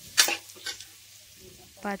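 Metal ladle stirring sliced onions, green chillies and curry leaves frying in oil in an aluminium pressure cooker, scraping sharply against the pot two or three times, loudest just after the start, over a quiet sizzle.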